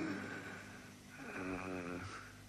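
A badly wounded man breathing heavily and groaning, with one drawn-out groan in the second half.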